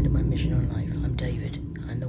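A woman speaking softly, close to a whisper, over a steady low hum.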